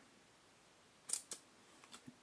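Basketball trading cards sliding against each other as they are shuffled by hand: two short swishes about a second in, then a fainter one near the end.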